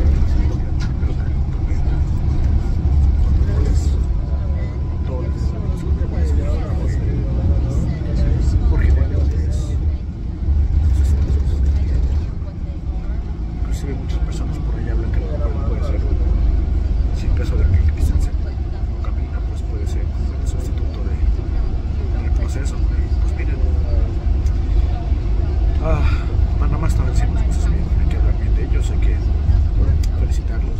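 Steady low engine and road rumble inside a moving coach bus, with a man talking over it.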